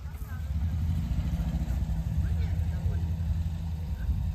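A motor vehicle's engine running at low speed: a steady low rumble that swells about half a second in, with faint voices in the background.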